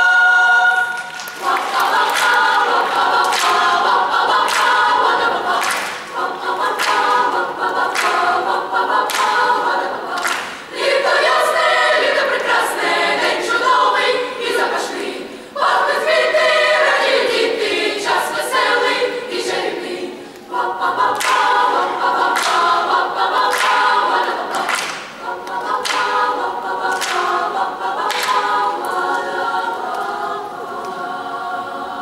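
Youth choir singing unaccompanied in parts: a held chord releases about a second in, then the choir goes on through several sung phrases with short breath pauses between them.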